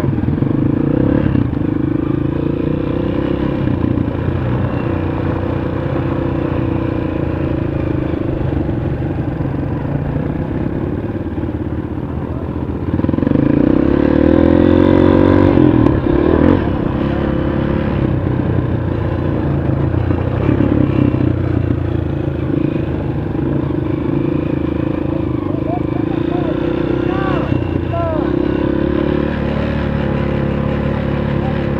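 Honda CRF230 dirt bike's single-cylinder four-stroke engine running at low, steady throttle. Revs rise for a few seconds about 13 seconds in, then settle back.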